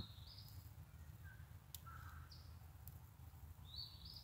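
Near silence with a few faint, short bird calls, some high and some lower, over a steady low rumble.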